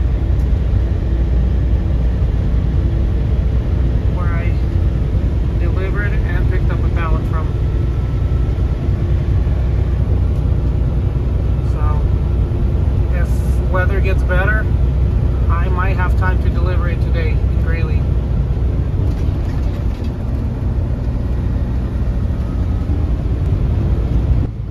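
Steady low drone of a semi truck's engine and road noise heard inside the cab while driving, with a voice heard faintly in places over it.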